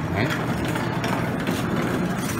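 Restaurant background noise: a steady low hum with people's voices in the room.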